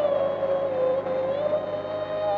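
Background film score: one long held melodic note with overtones. It sags in pitch about halfway through and then climbs back.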